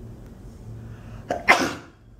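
A person's sudden explosive burst of breath through the mouth and nose, a short catch and then a louder blast about a second and a half in, over a low steady hum.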